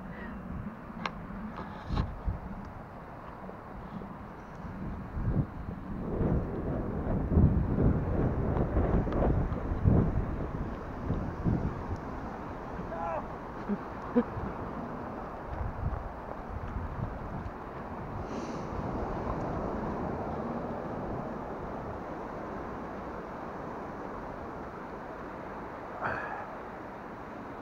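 Wind buffeting the microphone in gusts, heaviest for several seconds in the first half, over the steady wash of North Sea surf breaking on a sandy beach.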